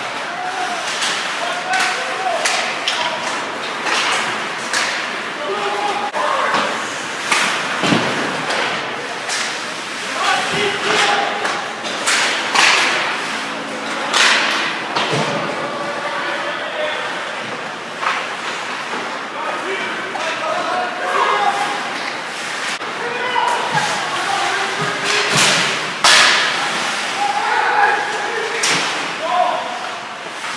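Ice hockey play at the rink: repeated sharp clacks and thuds of sticks, puck and bodies against the boards and glass, with players and spectators shouting.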